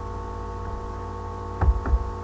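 Steady electrical mains hum made of many evenly spaced tones, with two short knocks close together near the end.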